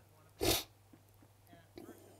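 A single short, sharp breath burst from a man close to the microphone about half a second in, followed by a few faint clicks.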